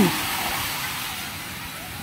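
Shallow sea surf washing over the shore: an even hiss that slowly fades.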